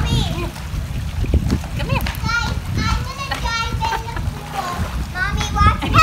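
Children's high-pitched calls and shouts, with water splashing as they swim in a pool. The calls come in a run in the middle and again near the end.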